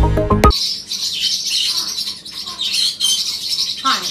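A short burst of intro music with a beat ends about half a second in. A parrotlet then chirps and twitters continuously in quick, high notes.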